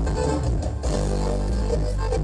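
Live dance music from a Mexican regional band, with bass and guitar, playing steadily.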